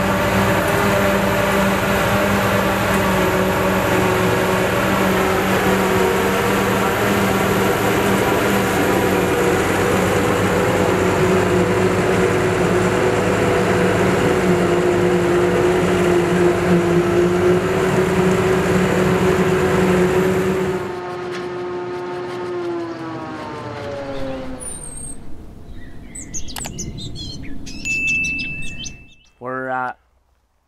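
A Claas self-propelled forage harvester and a Case Puma 185 tractor running while chopping grass silage: a loud, steady drone with a high whine over it. About two-thirds of the way in the noise drops suddenly, and the machinery winds down with falling pitch. Birds then chirp until a short burst of different sound right at the end.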